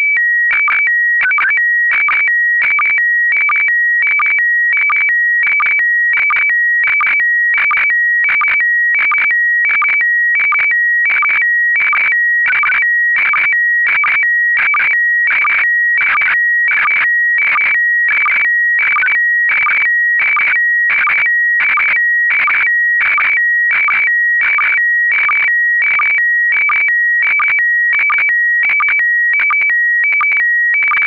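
Slow-scan television (SSTV) picture being sent in PD90 mode, a circuit schematic. It sounds as two steady high beeping tones broken by short chirps at an even rate of about one and a half a second, one per pair of picture lines.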